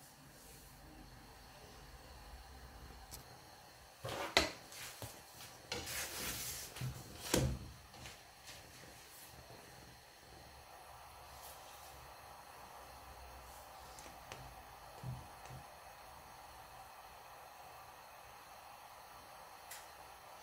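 A few knocks and scrapes of a flatbread being turned over in a non-stick frying pan on a gas hob, clustered between about four and eight seconds in; otherwise only a faint steady hiss.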